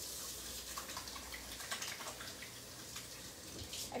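Kitchen sink tap running steadily while hands are washed under it, with a few small clicks and knocks in the sink.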